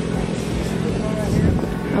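Faint chatter of other people, with a steady low hum underneath.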